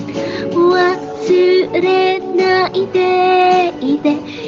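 A woman singing a slow melody with long held notes, with music behind her.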